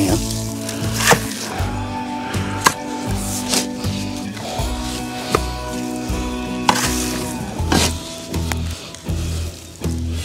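Shovel blade striking and scraping into tough, hard-packed soil about five times, over steady background music.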